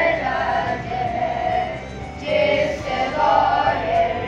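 A group of boys singing a song together in chorus.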